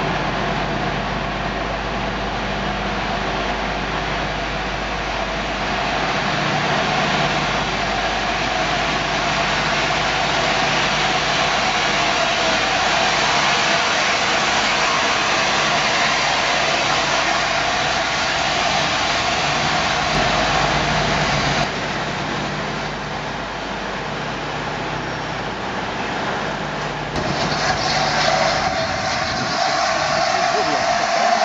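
LNER Class A4 Pacific three-cylinder steam locomotive drifting slowly into the platform with its train, a steady rumble of wheels and running gear. About three-quarters of the way through, a louder hiss of escaping steam starts up.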